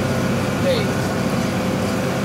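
John Deere 4630 tractor's six-cylinder diesel engine running steadily under way, heard from inside the cab: a low, even rumble with a faint steady whine on top.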